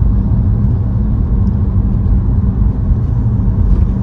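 Steady low road rumble and tyre noise inside the cabin of a BMW electric car driving at speed.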